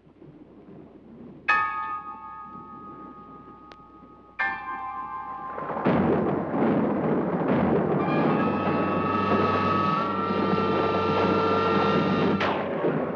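Horror film score: two sudden bell-like struck chords, each ringing and fading, about a second and a half in and again near the middle. Then a loud, rumbling swell builds, with high held chord tones joining it in the second half.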